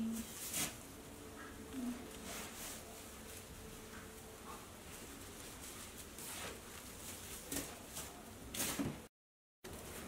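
Faint rustling and handling of black sequined fabric, with a few soft brushes and shuffles scattered through it. The sound cuts out completely for about half a second near the end.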